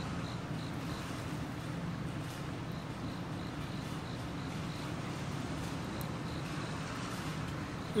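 Blended strawberry mixture poured in a steady stream from a blender jar through a metal mesh strainer into a glass pitcher of water.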